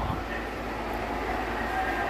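Steady background noise with faint voices underneath.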